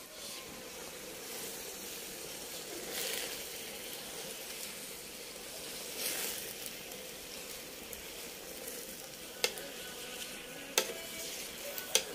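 Leafy greens sizzling and hissing in a metal pot over a wood fire while they are stirred, with louder swells of hiss now and then. Two sharp clicks near the end, a metal ladle knocking against the pot.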